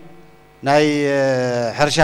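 A man's voice through a microphone: after a brief pause he draws out one long, slightly falling vowel, a hesitation sound, and then speech resumes near the end.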